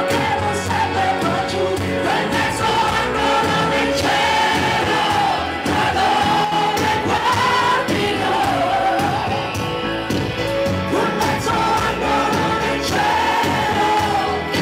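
A woman singing a pop-rock ballad live into a microphone, holding long wavering notes, over a band with electric guitar.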